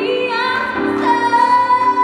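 A woman singing a gospel song into a microphone over musical accompaniment, holding one long note from about halfway through.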